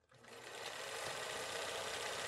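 Film-projector whirring sound effect: a faint, steady, rapid clatter starting about half a second in.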